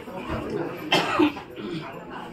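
A short cough about a second in, with people talking in the room.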